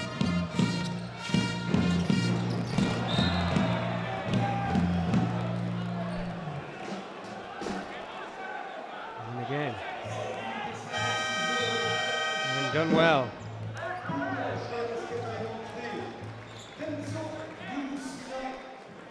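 Basketball arena sound: the ball bouncing and crowd noise, with music over the arena speakers. About eleven seconds in a long horn sounds for about two seconds, as play stops.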